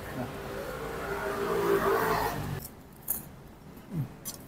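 Roadside background of a motor vehicle going by and voices, which drops away suddenly about two and a half seconds in. A light metallic clink of cutlery follows, then a soft thump at the end.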